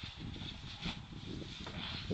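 Wind rumbling on the microphone, with a faint dull thump about a second in as a person lands in deep snow after jumping from a raised landing.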